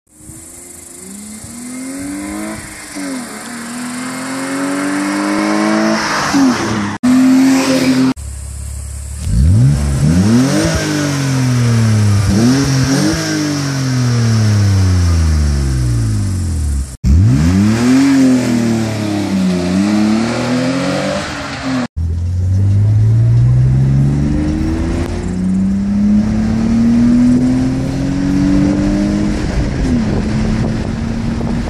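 BMW E46 320i's 2.2-litre straight-six breathing through a K&N sport air filter and a Bastuck exhaust, heard in several short joined clips. It is revved and accelerated over and over, the pitch climbing and then dropping back at each gear change or lift-off.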